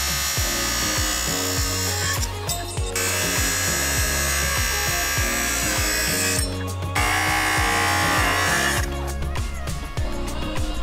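Circular saw running and cutting through lumber in three stretches, with short breaks about two and a half and six and a half seconds in, over background music.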